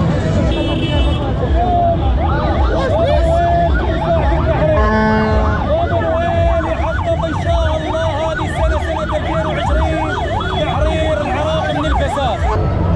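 An emergency siren sounding in fast rising-and-falling sweeps, about two or three a second, over a steady held tone, with dense crowd noise beneath.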